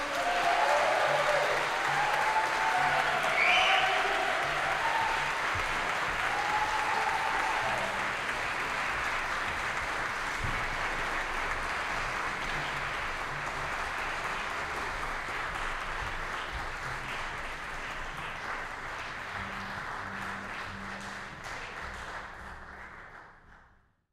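Audience in a concert hall applauding, with a few shouted voices over the clapping in the first several seconds; the applause slowly fades and cuts off just before the end.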